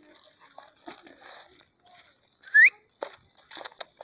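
A dog gives a single short, high yelp that rises in pitch, over faint rustling and clicks from movement through dry vegetation.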